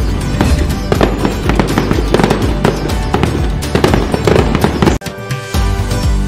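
Fireworks crackling and banging in quick, irregular succession over festive background music; the sound drops out briefly about five seconds in before the music picks up again.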